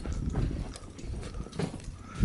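Footsteps crunching in snow, about two steps a second, over a steady low rumble.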